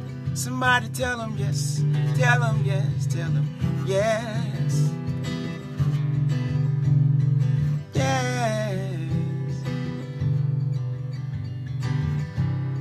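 Acoustic guitar strummed steadily in chords, with a voice singing a few short wordless phrases over it, held notes with a wavering vibrato.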